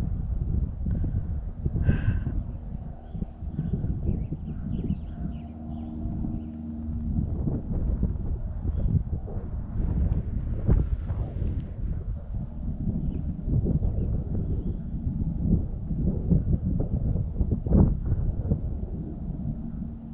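Wind buffeting the microphone in an uneven, gusty low rumble.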